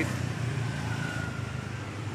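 Street traffic: a vehicle engine running steadily, with a faint high whine in the middle that slides slightly down in pitch.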